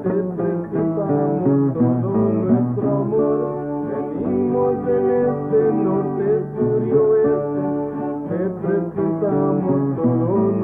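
Acoustic guitar playing the accompaniment of a Hispanic folk song from New Mexico and southern Colorado, a passage between sung lines.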